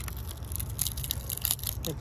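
Grilled lobster tail being pulled apart by hand: the shell crackles and clicks in a scatter of small irregular snaps as the meat is worked loose.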